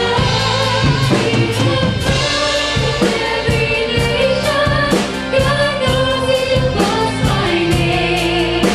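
A live gospel praise team: several singers singing together into microphones, backed by electric guitar, bass guitar and drum kit, with a steady drum beat.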